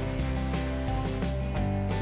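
Background music of steady held chords and a bass line, with a hiss of oil sizzling and bubbling in a frying wok beneath it.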